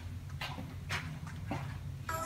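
Soft footsteps on a bare concrete slab floor, about two steps a second, over a low steady hum.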